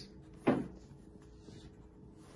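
A single short knock about half a second in, then quiet room tone with a faint steady hum.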